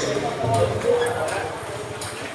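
Table tennis balls clicking off bats and tables, a few sharp ticks in under two seconds, with several rallies overlapping in a hall of many tables and voices murmuring behind.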